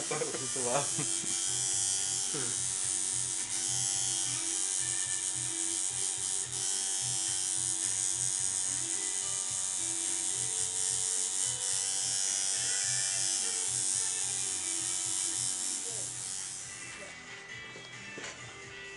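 Coil tattoo machine buzzing steadily as the needle works ink into skin. It stops near the end.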